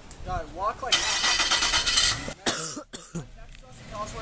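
A first-generation Nissan Xterra SUV working on a wet, grassy verge: engine and tyre noise, with a louder rushing hiss from about one to two seconds in and a few sharp bursts just after. Faint voices run underneath.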